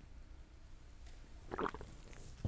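A man drinking from a mug in a quiet room, with one short swallowing sound about one and a half seconds in.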